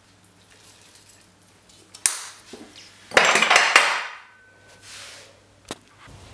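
Seeds shaken from a small container into a glass bowl of chopped fruit: a sharp clink about two seconds in, then a louder pouring rattle lasting about a second, and another small click near the end.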